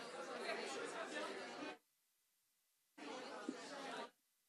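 Many people chattering at once in a large meeting hall. The sound cuts out abruptly just under two seconds in and comes back about a second later.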